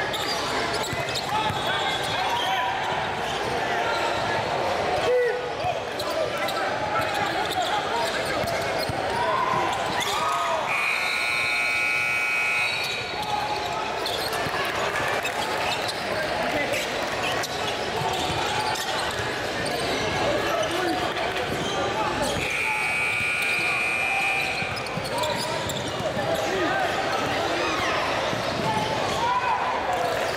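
A basketball bouncing and being dribbled on a hardwood gym floor, amid the chatter of spectators and players echoing in a large hall. A held high tone of about two seconds sounds twice, about eleven seconds in and again about twenty-two seconds in.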